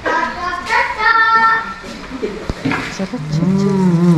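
People's voices without clear words. A high voice holds a couple of sung notes about a second in, and a low voice hums one long note that rises and falls near the end. A single sharp click comes between them.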